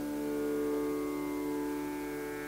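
Carnatic violin holding one long, soft, steady note in raga Kalyani.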